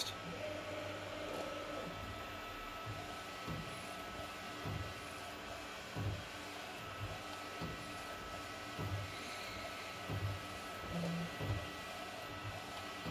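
Epson F2100 direct-to-garment printer running a nozzle check print: a steady mechanical whir with a faint steady whine, and soft knocks every second or so.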